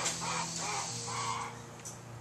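Several short, harsh, bird-like calls in quick succession over a low steady hum, fading out about a second and a half in.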